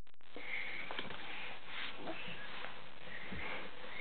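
Quiet room with a few soft sniffs and breaths close to the microphone, and faint handling of a book's card pages.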